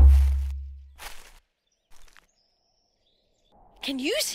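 A deep drum beat at the start, the last of a steady beat, rings and fades over about a second. A brief soft rustle follows about a second in, then near silence.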